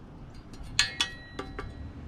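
Three light metallic clinks with brief ringing, the first two close together and a third about half a second later, as the metal plates of a dash phone-mount bracket are handled.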